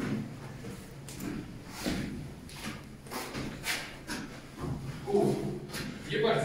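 Footsteps on a gritty concrete floor, roughly one to two steps a second. A voice is heard briefly near the end.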